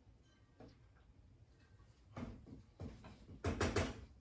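Wooden spoon in a full stainless steel pot of stew: a few scrapes and knocks from about halfway, then a quick run of sharp knocks near the end as the spoon is tapped against the pot.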